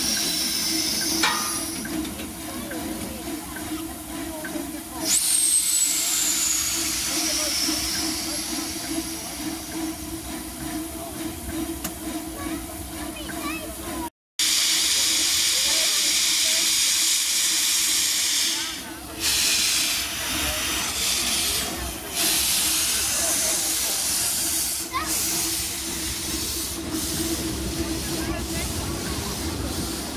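Small 12-inch-gauge steam locomotive hissing steam, with a sudden louder burst about five seconds in. After a brief break about halfway through comes a loud steady rush of escaping steam, then surges of steam as the locomotive starts to move off.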